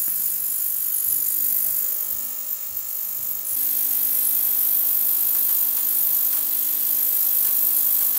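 Ultrasonic record-cleaning tank running with a vinyl record in the bath on a motor-driven spindle, near the end of its cleaning cycle: a steady high hiss with a buzz under it. About three and a half seconds in, it steps up into a fuller, even hum.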